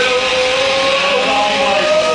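Punk rock band playing live: loud distorted electric guitars with bass and drums, a long held note that bends slightly about a second in.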